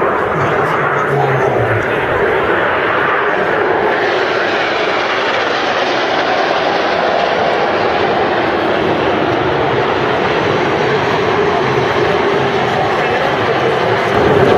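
Jet aircraft of an aerobatic formation flying past: the Aermacchi MB-339 trainers' turbojet engines making a loud, steady rushing noise that gets brighter about four seconds in.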